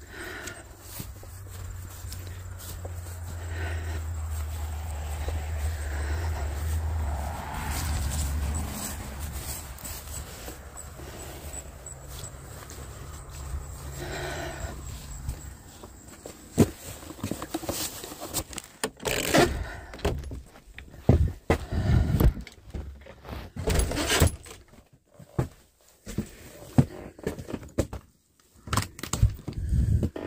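A steady low rumble for about the first half, then a run of knocks, clicks and footsteps as a wooden outside door is opened and someone steps inside.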